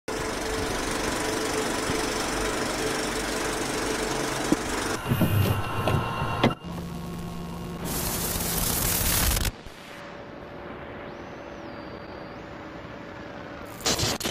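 VHS-style tape noise and static with a steady hum, a few mechanical clunks and rattles, and a louder burst of hiss about eight seconds in, followed by quieter tape hiss with a faint steady tone.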